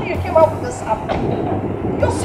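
People talking in short exchanges over a steady low hum.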